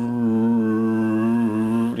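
A man's voice holding one long, steady note, a drawn-out wordless hum, for about two seconds.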